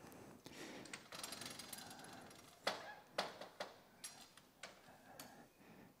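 A door's handle and latch being worked, with a series of faint metallic clicks and knocks that grow more frequent after the first couple of seconds: the door is sticking and will not shut easily.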